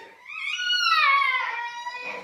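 A young child's voice: one long, high-pitched vocal cry that rises and then slides down in pitch, loudest about a second in.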